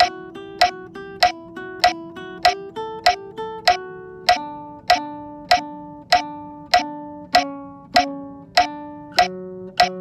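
Classical nylon-string guitar playing a single-note melody, the first guitar part of a quartet piece in D, with notes moving step by step and held between beats. A loud, sharp metronome click keeps time about every 0.6 s throughout.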